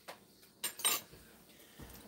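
A utensil clinking and scraping against a glass baking dish of bread pudding as a piece is dug out: a small click, then two sharp clinks close together about two-thirds of a second later.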